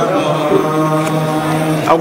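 Male devotional chanting (dhikr), a low note held steady for about a second and a half before the melody moves again near the end.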